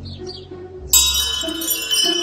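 A bright, ringing bell-like chime sound effect comes in suddenly about a second in and holds, over a low steady hum.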